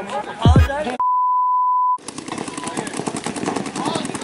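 Music with deep falling bass notes stops about a second in and gives way to a steady one-second beep. Then a rapid, even stream of paintball marker shots starts up.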